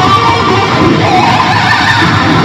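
Electric guitar solo played loud through a concert sound system, continuous without a break.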